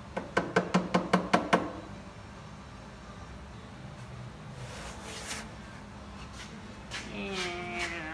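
A quick run of about eight sharp knocks in the first second and a half, then the faint steady trickle of engine oil draining from the oil pan into a plastic catch pan. There is a short hiss a little after the middle and a brief voice near the end.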